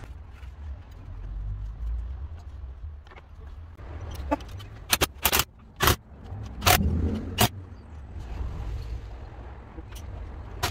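Metal engine parts and tools being handled on a bench: a run of sharp clicks and knocks, bunched in the middle, over a low rumble.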